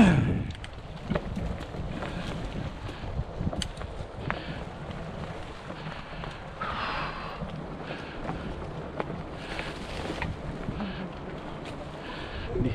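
Fat-tire mountain bike rolling over a dirt trail covered in dry leaves: steady tyre noise with scattered rattles and clicks from the bike, and wind on the microphone. A short laugh opens it.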